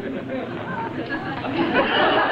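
Studio audience laughing and murmuring, swelling louder near the end.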